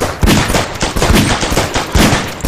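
Gunfire: one shot, then a rapid burst of many shots fired in quick succession.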